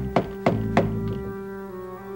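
Knuckles knocking on a door, three quick raps about three a second within the first second, over sustained organ chords of soap-opera background music.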